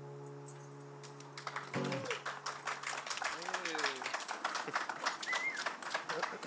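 The song's last chord is held and fades out over the first three seconds. About a second and a half in, a small crowd starts clapping, with a few whoops and cheers.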